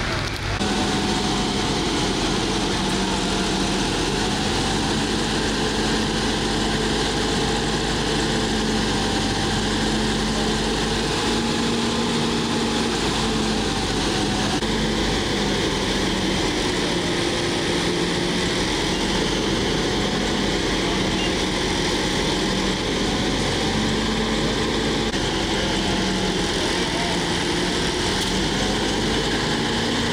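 Fire engine's diesel running steadily at the fire scene, a continuous engine drone whose pitch wavers slightly.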